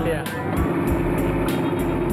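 A drag-race car's engine running at a steady pitch, heard over background music with a regular beat.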